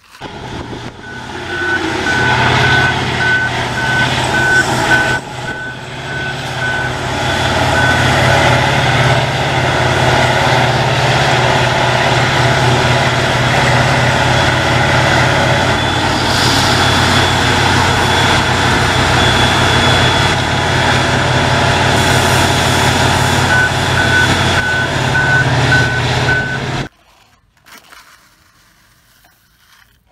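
Heavy mining machinery, a giant wheel loader working with a haul truck, running with a steady loud engine drone. A reversing alarm beeps about twice a second for the first several seconds and again near the end. The machine sound cuts off suddenly a few seconds before the end.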